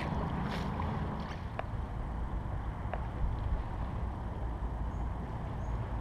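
Steady low wind rumble on the microphone out on open water, with a few faint small clicks.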